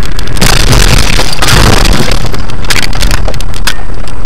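A car ramming the car ahead, picked up on a dashcam: a loud, rough crunching crash lasting a couple of seconds, over the low rumble of the moving car, with the audio overloaded.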